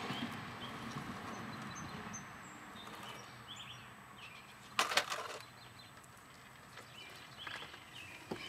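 Waveboard's small wheels rolling on asphalt with a low rumble that fades over the first few seconds, then a short clatter of hard knocks about five seconds in, with a few faint clicks near the end.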